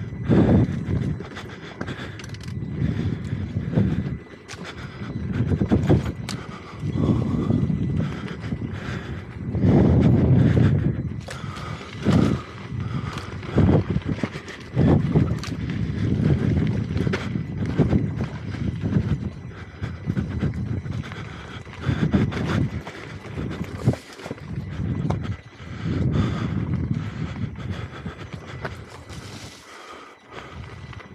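Electric unicycle riding over a rough dirt and stone trail: an uneven low rumble that swells and fades every second or two, with scattered sharp knocks and rattles as the wheel rolls over stones and ruts.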